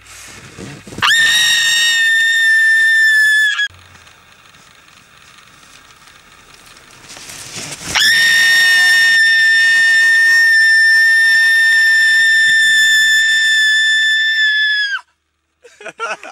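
A man screaming in fright, two long high-pitched shrieks held at a steady pitch: a shorter one of about two and a half seconds, then after a pause a much longer one of about seven seconds that drops away at its end.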